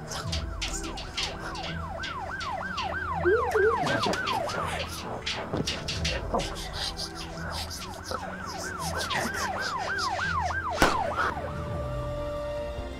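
Police siren on a fast yelp, rising and falling about three times a second, in two stretches with a short break between. A sharp knock comes near the end.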